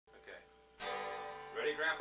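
Acoustic guitar: a chord strummed about a second in and left ringing, with a voice speaking briefly over it near the end.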